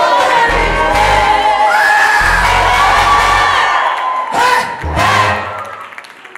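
Live Rwandan gospel praise team singing with band accompaniment and a bass line, with voices from the congregation. The music drops away near the end.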